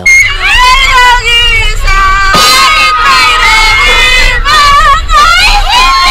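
Several women screaming and shrieking with laughter on a swinging amusement ride. Their long, high screams overlap and rise and fall in pitch.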